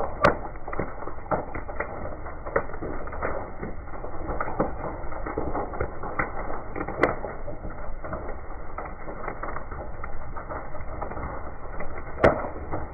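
A burning camper trailer crackling and popping, with a steady low rumble of fire underneath. A few sharper pops stand out, one just after the start and one about seven seconds in.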